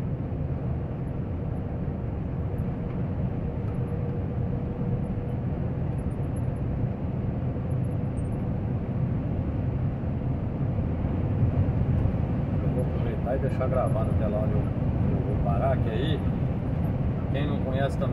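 Steady engine and tyre drone heard from inside a semi-truck's cab while it cruises along the road, getting a little louder in the second half.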